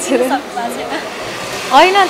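A woman's voice speaking briefly, then a steady hiss on its own for about a second before her speech resumes near the end.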